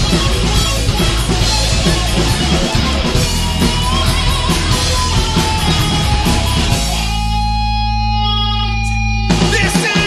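Rock band playing live: electric guitars and bass guitar through amplifiers in an instrumental passage. About seven seconds in, the band holds one sustained chord for about two seconds. The chord cuts off suddenly and the full band comes back in near the end.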